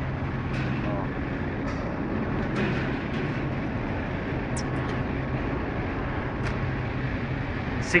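Car repair workshop background noise: a steady low machine hum under an even noise, with a few faint clicks and faint distant voices.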